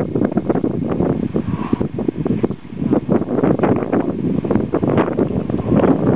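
Wind buffeting the camera microphone: a loud, gusty rumble with frequent crackles.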